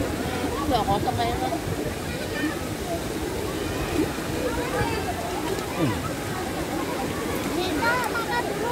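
Swimming-pool ambience: a steady rush of water with many voices chattering and calling in the background.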